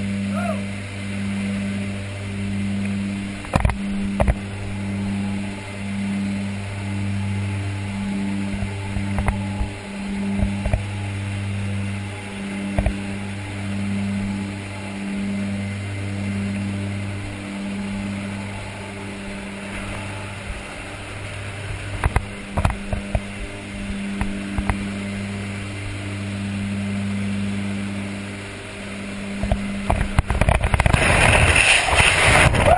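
Short Skyvan's twin turboprop engines droning inside the cabin, the low hum swelling and fading about once a second, with a few sharp knocks along the way. A rush of air noise begins right at the end as the jumper leaves through the open rear ramp.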